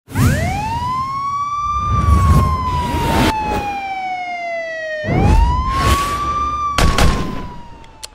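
A wailing siren sound effect, rising over about two seconds and then sliding slowly down, twice. Deep whooshing hits land about two, three, five and seven seconds in, and it all fades near the end.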